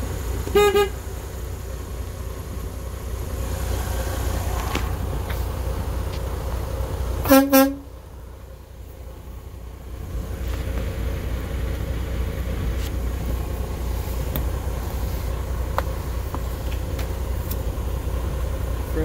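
Truck horn on a Freightliner Cascadia sounded twice in short toots, once about half a second in and again about seven seconds in, the second lower-pitched and louder. A steady low hum from the idling diesel engine runs beneath.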